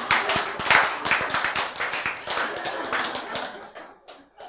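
Audience clapping and laughing, the clapping thinning out and dying away near the end.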